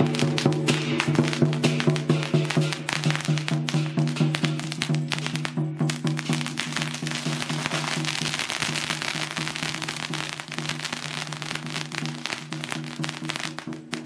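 A long string of firecrackers crackling rapidly and without a break, over steady held notes of processional music.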